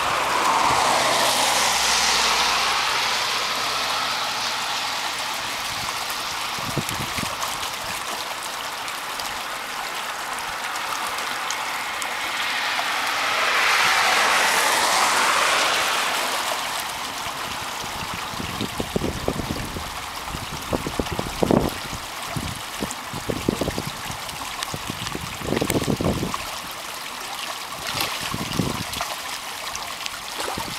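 A small creek running over shallows, a steady rushing and trickling of water that swells twice. In the second half, a string of short dull thumps sounds over the water.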